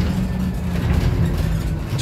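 City bus running at the stop: a steady low engine rumble.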